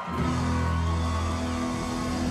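Live blues-rock trio of electric guitar, electric bass and drums kicks into a song. The band comes in loud right at the start, over a held low note.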